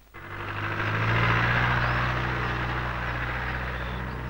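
An engine running steadily, a low hum with a hiss over it, swelling in over the first second and easing off a little toward the end.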